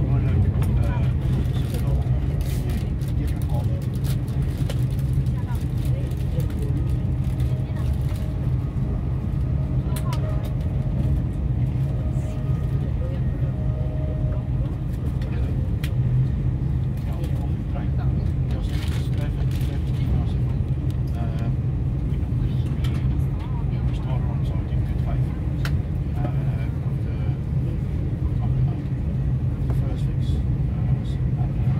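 Steady low rumble of a moving vehicle heard from inside, with scattered light clicks and rattles and indistinct voices in the background.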